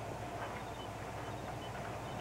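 Steady low background ambience from an old film soundtrack, with a low hum and hiss, and a few faint short high chirps now and then.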